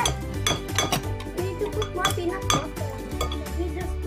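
Spoons and spatulas clinking and scraping against glass mixing bowls as an oat mixture is stirred by hand: a quick, irregular run of clinks. Light background music plays underneath.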